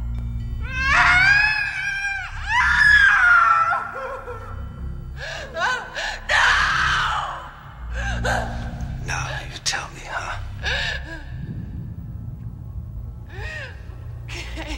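A woman screaming and crying out in several strained bursts with gasping breaths, the loudest cries in the first few seconds, over a low steady drone of film score.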